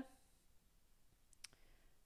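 Near silence with a couple of faint clicks about one and a half seconds in: a stylus tapping on a tablet screen while writing.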